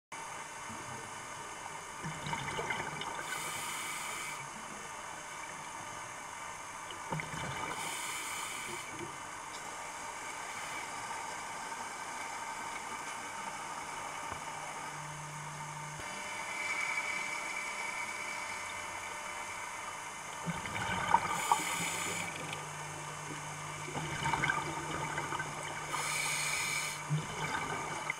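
Underwater sound of a scuba diver breathing through a regulator, with four short hissing bursts of exhaled bubbles a few seconds apart, over a steady wash of water noise and a faint low hum in the second half.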